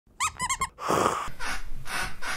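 A squeaky plush toy squeezed three times in quick succession, short squeaks that bend up and down in pitch, standing in for basketball sneaker squeaks. Then, from about a second in, a rustling swish of bedding being pressed and rubbed, standing in for a ball swishing through the net.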